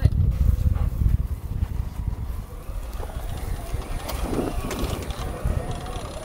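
Off-road golf cart driving up a steep hill through deep snow. A heavy low rumble fills the first two seconds, and a faint, slightly wavering whine from the drive comes in about halfway.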